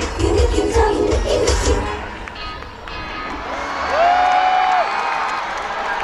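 A K-pop dance track with a heavy bass beat plays live over a festival sound system and ends about two seconds in. An audience then cheers and screams, with one long high-pitched shout standing out near the middle.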